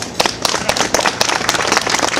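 A small crowd applauding: many separate hand claps at an irregular pace, fairly loud.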